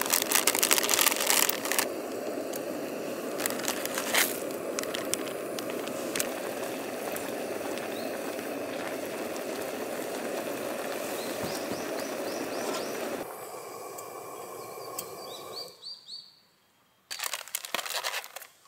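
Instant ramyeon boiling hard in a camping pot: a steady rushing noise with bubbling and popping, which dies away in two steps after about 13 seconds. Short bird chirps come near the end of the boil, and a plastic wrapper crinkles just before the end.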